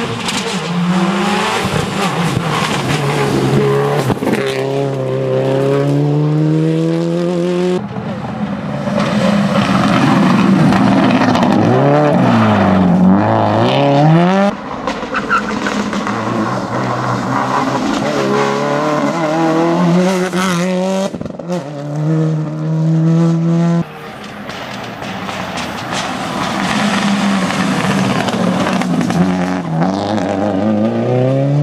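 Subaru Legacy rally car engine at full throttle, its pitch climbing and dropping at each gear change, with a deep dip and climb again as it slows for a bend. Heard over several passes that break off abruptly.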